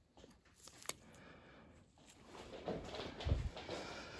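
Faint handling noise during suturing: a single light click about a second in, then soft rustling and a low bump in the second half.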